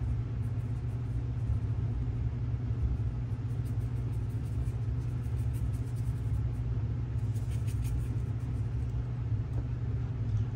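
Steady low background hum, even and unchanging throughout, with no clear event standing out above it.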